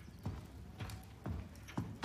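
A woman's footsteps on a hard floor, a steady walking pace of about two sharp steps a second.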